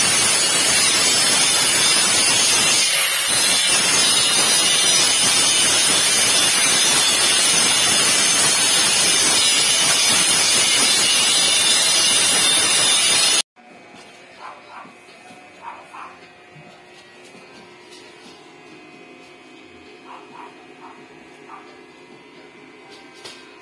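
Electric arc welding on the loft's steel frame: a loud, steady hiss that cuts off abruptly about 13 seconds in, followed by quiet room sound with a few faint clicks.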